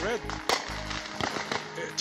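Fireworks going off: a few sharp pops, one about half a second in and a small cluster a little past one second.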